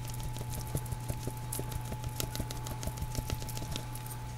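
Paprika being sprinkled over a pan of pork, cabbage and tomatoes: light, irregular ticks and patter, over a steady low hum.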